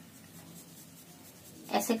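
Faint pencil scratching on paper in short back-and-forth hatching strokes. A single spoken word near the end.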